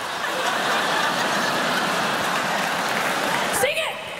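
Live theatre audience laughing and applauding steadily after a punchline, with a short rising cry near the end.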